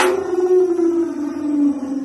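A beatboxer's sharp mouth-percussion hit running straight into one long held vocal note that slides slowly down in pitch, a siren-like sustained tone.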